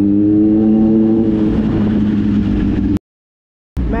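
Kawasaki Z900's inline-four engine under way, its note rising slowly as the bike gathers speed, then holding steady. The sound cuts out abruptly to silence about three seconds in.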